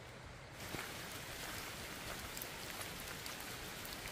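Light rain falling: a faint, steady hiss of drops with scattered sharper drop ticks, growing fuller about half a second in.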